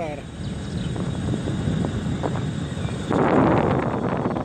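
Riding noise of an electric kick scooter on asphalt: a steady low rumble of tyres and wind on the microphone, which turns into a much louder rush of wind about three seconds in.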